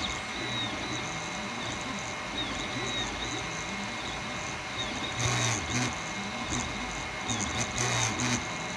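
Creality Ender 3 3D printer printing: its stepper motors whine in short tones that jump in pitch with each move of the print head, over the steady hiss of the hotend cooling fan. A louder, brighter stretch of movement comes a little past the middle.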